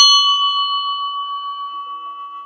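A bell struck once, ringing on and slowly dying away with a steady wavering pulse. Near the end a softer, lower tone joins it.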